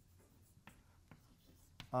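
Chalk writing on a blackboard: a few faint taps and scratches as the chalk strikes and drags across the board.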